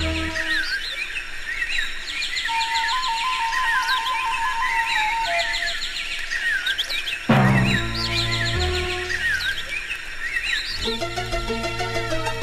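Dark electronic drum and bass intro: a bed of bird chirps runs throughout under a held synth tone, then a heavy bass hit lands about seven seconds in.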